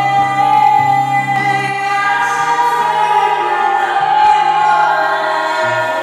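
Sped-up, reverb-heavy recording of a musical-theatre song: a voice sings long held notes over sustained chords, with a bass note that changes every second or two.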